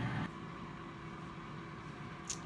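GoWISE USA air fryer running with its fan on: a steady low hum with a faint steady tone, a little louder for the first quarter second.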